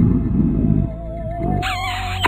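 Spooky cartoon background music with a wavering, warbling tone, over which a cartoon monster gives a low growling grunt in the first second and another shorter one about a second and a half in. A short bright sound effect comes near the end.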